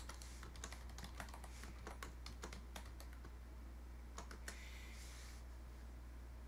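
Fingers typing on a computer keyboard: quick, irregular key clicks over the first three seconds, a couple of firmer key presses around four and a half seconds in, then a brief soft rush of noise.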